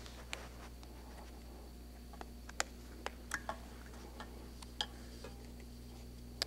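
Faint, irregular small clicks and light scratches as a joint gasket and Teflon ring are pressed into place by hand around the wrist joint housing of a UR5 robot arm. A steady low hum runs underneath.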